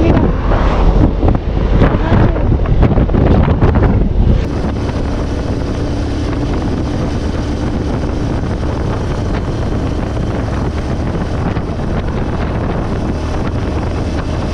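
Italika V200 motorcycle riding at road speed: heavy wind buffeting on the microphone over the engine and road noise. About four seconds in the sound changes suddenly to a quieter, steadier hum of engine and tyres with much less wind.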